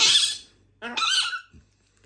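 Baby hamadryas baboon giving two short, high-pitched squeals at the start and about a second in.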